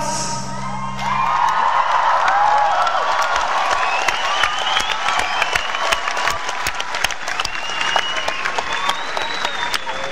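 Concert audience applauding and cheering at the end of a rock song, with high-pitched cheers over the clapping. The band's last chord dies away about a second in.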